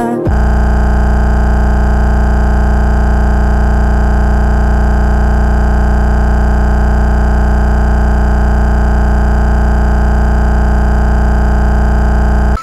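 A loud, steady, distorted buzzing drone held on one unchanging pitch. It replaces the song about a quarter of a second in.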